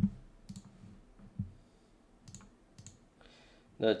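A few faint sharp clicks and two dull low knocks, one at the very start and one about a second and a half in, at a quiet desk; a man's voice begins right at the end.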